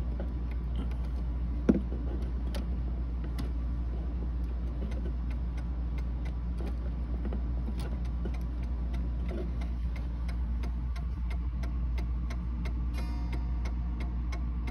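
Mantel clock movement ticking as its verge and escape wheel work, while the verge wire is being bent to set the beat; the ticks come close to an even tick-tock. A single knock about two seconds in, over a steady low hum.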